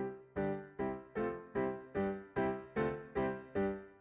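Pianoteq virtual piano on a modelled Steinway D preset playing an evenly paced run of single notes, about two and a half per second, each struck and left to decay. The piano is set up with some notes microtonally detuned.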